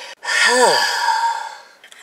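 A woman's long, breathy sigh, with a brief voiced note near the start that rises and then falls, trailing off over about a second and a half.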